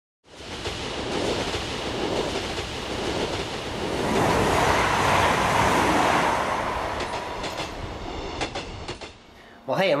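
Train passing by, used as an intro sound effect: a rushing rumble that builds to its loudest about halfway through, then dies away, with a few sharp clicks as it fades.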